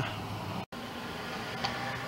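Low, steady background noise with a faint hum and no distinct event. It cuts out completely for an instant about two-thirds of a second in, where the recording is edited.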